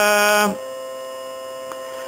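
A male voice chanting Sanskrit verse holds its last syllable and stops about half a second in; after it a steady electrical mains hum of a few fixed tones carries on, with one faint click near the end.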